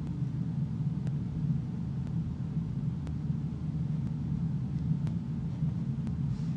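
Steady low hum, with a faint tick about once a second.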